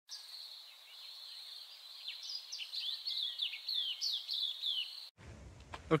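Birds chirping: short high calls that fall in pitch, repeating several times from about two seconds in, over a steady high-pitched drone. It all cuts off suddenly about five seconds in.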